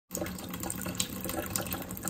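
Kitchen mixer tap running a thin stream into a stainless steel sink, a steady splashing hiss. The weak flow is the sign of low mains water pressure.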